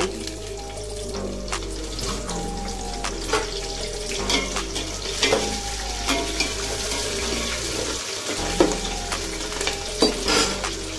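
Liquid bubbling in a large aluminium cooking pot, with a ladle stirring and knocking against the pot several times.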